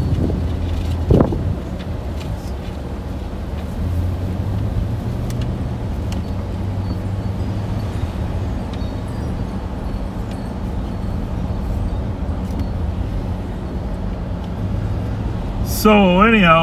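Steady low rumble of a car's engine and tyres heard from inside the cabin while driving slowly, with a short knock about a second in.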